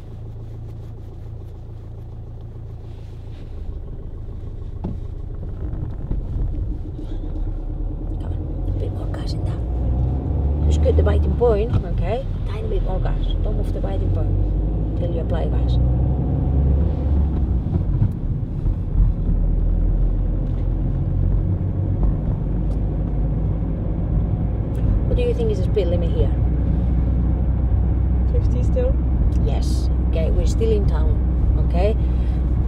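Car engine and road noise heard from inside the cabin: a low hum at first, then a louder rumble that builds over the first ten seconds or so as the car moves off and gathers speed, then holds steady.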